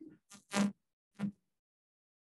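Handheld microphone being handled: four short rubs and bumps, the loudest about half a second in.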